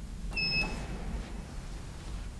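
A single short electronic beep from a modernised ManKan Hiss AB elevator's signal, about half a second long, heard over a low background rumble.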